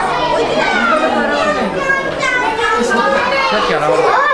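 Many children talking and calling out at once in a classroom, their high voices overlapping into a continuous chatter.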